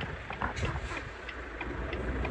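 Semi-truck diesel engine running at low speed as the truck pulls forward, a steady low rumble heard from inside the cab, with a brief noise about half a second in.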